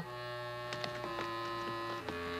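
Background music score of held, sustained chords with a few light short notes, the chord shifting about a second in.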